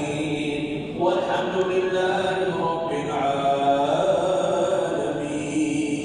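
Melodic Islamic religious chanting by voice in a reverberant mosque hall, sung in long held notes, with a fresh phrase beginning about a second in and another near three seconds.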